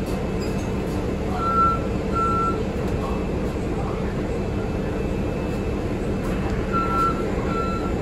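Inside a Nova Bus LFS city transit bus: the steady low hum and rumble of its diesel engine and drivetrain, with two pairs of short, high electronic beeps, one pair about a second and a half in and another near the end.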